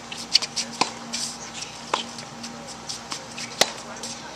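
Tennis rally: the ball struck back and forth by rackets, three sharp hits about a second to a second and a half apart, the loudest near the end.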